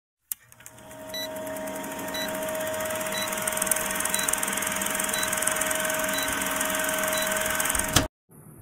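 Vintage film-projector countdown sound effect: a steady projector whir with hiss and crackle, and a short high beep about once a second, seven times. It ends with a sharp click.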